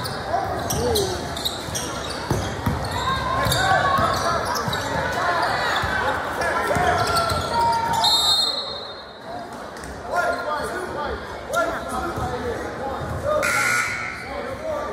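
A basketball being dribbled on a hardwood gym floor during live play, under voices from players and spectators in a large echoing hall. About eight seconds in, a short high whistle sounds, and play has stopped by the end.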